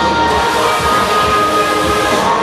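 Loud dance music with a sharp, steady hiss that starts about a third of a second in and runs for nearly two seconds: a confetti cannon blasting confetti over the stage.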